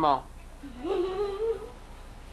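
A short wordless vocal sound from a person, rising in pitch and then held for about a second, coming right after a spoken word trails off.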